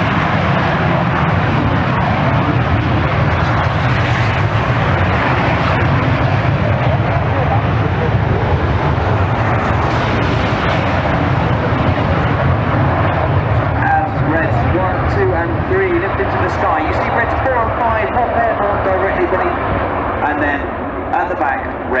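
BAE Hawk T1 jets' Adour turbofans at take-off power as a formation rolls and climbs away: a loud, steady jet noise that eases off after about twelve seconds, leaving voices heard over it.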